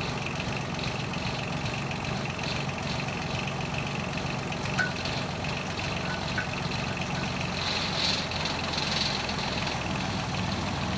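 Engine of a homemade well-drilling rig running steadily, with one short click about five seconds in.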